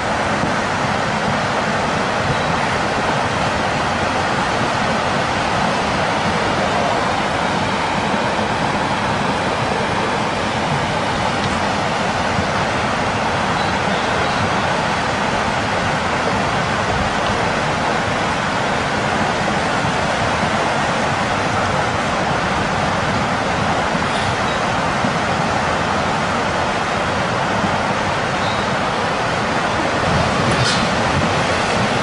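Tsunami floodwater rushing along a street and between buildings, heard as a loud, steady rush of water.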